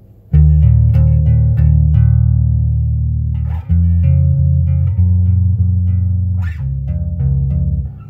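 Electric bass guitar played with the thumb and index finger alternating rapidly on held two-note shapes, a fast tremolo of repeated plucks. The notes shift to a new position about a third and two-thirds of the way through.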